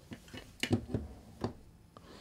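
Aluminium fishing-reel parts (side plate and frame) being handled and set down on a work mat: a few light clicks and knocks, bunched between about half a second and a second and a half in.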